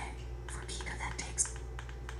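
Whispered speech to or from an Alexa smart display, with a short click about one and a half seconds in.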